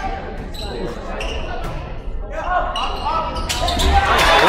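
Indoor volleyball rally in a gymnasium: the ball is struck sharply several times, with players and spectators calling out in the echoing hall, and the voices grow louder near the end.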